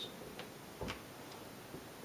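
A few faint clicks and taps, the clearest about a second in, from a whiteboard marker being handled as it is brought to the board.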